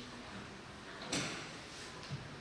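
A single sharp knock about a second in, the sound of a handheld microphone being handled and knocked against the desk, over faint room noise.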